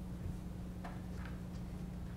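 Quiet room tone: a steady low hum, with two faint clicks about a second in.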